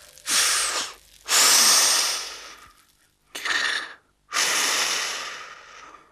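A man's heavy breaths, four long rushes of air in a row, the second and the last the longest and loudest.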